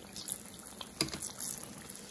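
Vegetable oil sizzling and crackling steadily as batter-coated eggplant slices deep-fry, with a sharper tick about a second in.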